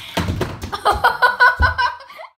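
A woman laughing in a quick run of short, evenly repeated high bursts, after a moment of rustling and a couple of low thuds as she moves about.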